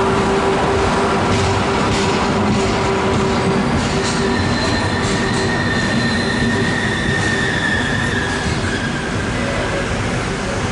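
Railway passenger coaches rolling slowly past along a station platform as the train comes in, with a steady rumble, scattered clicks from the wheels over the rails, and a high steady squeal from the wheels from about four seconds in until near the end.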